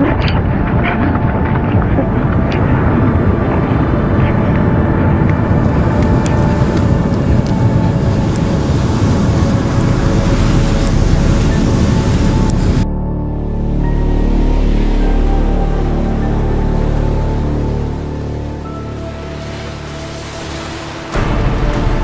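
Heavy rain and wind noise on the microphone, with surf breaking on the beach. About 13 seconds in it cuts off suddenly, giving way to background music of low sustained tones, and fuller music comes in near the end.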